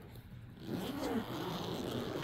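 Zipper on a padded storage case being pulled open, starting about half a second in and running steadily.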